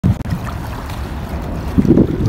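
Wind rumbling on a phone microphone over the soft wash of small waves lapping on a sandy shore, louder for a moment at the very start.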